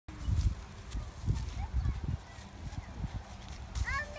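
Footsteps crunching on dry corn stalks and straw on a dirt path, irregular, with low thuds on the microphone. A young child's voice starts just before the end.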